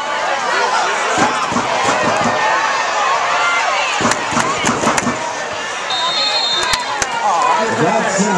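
A crowd of spectators and sideline players shouting and chattering over one another while a football play runs, with a few sharp knocks around the middle. About six seconds in, a short, steady, high-pitched referee's whistle sounds as the play is blown dead.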